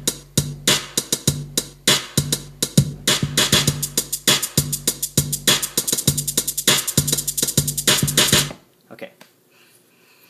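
Drum-machine beat from the iMaschine app on an iPad: rapid percussion hits over a repeating low bass note, with pads tapped in on sixteenth-note and sixteenth-note-triplet note repeat. The beat stops abruptly near the end.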